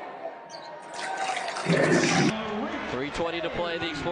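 Arena crowd cheering in a loud burst about a second in that cuts off suddenly, followed by a man's voice.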